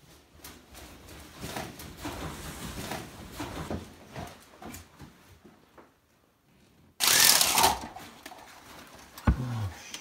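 Shuffling and handling noises with muffled voices, then about seven seconds in a sudden loud crash as a glass window pane is struck and cracks. Near the end there is a sharp knock and a short vocal exclamation.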